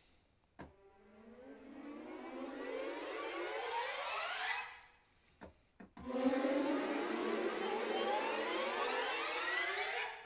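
Orchestral string section riser, bowed (arco), from a sampled library patch: a rising glide that swells from quiet over about four seconds and cuts off. A few mouse clicks follow, then the riser plays again from about six seconds in, louder from the start.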